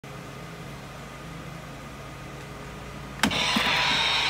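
Animatronic jumping spider Halloween prop triggering about three seconds in: after a faint steady hum, a sudden loud burst of hissing and mechanical noise starts as the spider lifts and carries on.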